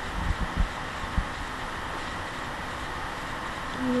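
Steady hiss from a webcam microphone's noise floor, with a few soft low thumps in the first second or so.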